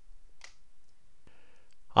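A single faint click about half a second in, then a short intake of breath just before speech resumes.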